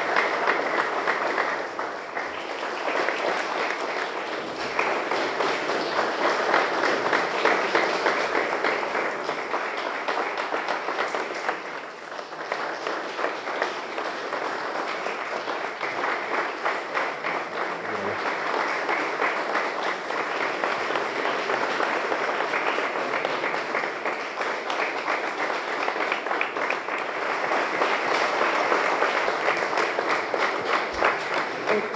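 Audience applauding: a dense, steady patter of many hands clapping, with a brief dip about twelve seconds in.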